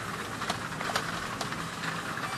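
Supermarket background noise: a steady hum with a few sharp clicks and knocks, such as shopping carts rolling and clattering.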